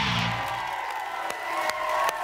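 A rock band's final chord ringing out and fading in the first half-second or so, then a studio audience cheering, whooping and clapping.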